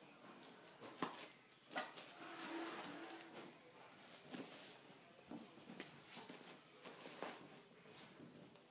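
Faint rustling of woven baby-wrap fabric as the loose ends are stuffed and tucked into the wrap by hand, with a few soft knocks.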